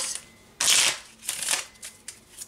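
A deck of playing cards being shuffled by hand, in three quick bursts of papery rustling, the first the loudest.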